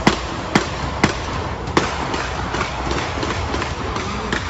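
A steady, loud rushing noise with sharp cracks about half a second apart: four in the first two seconds, then none.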